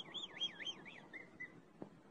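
A faint warbling whistle, its pitch swinging up and down about five times a second, that fades out about a second and a half in; a single small click follows near the end.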